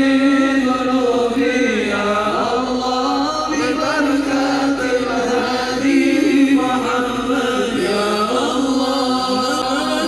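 Sholawat, Arabic devotional praise of the Prophet, chanted by many voices in a continuous melody with long held notes.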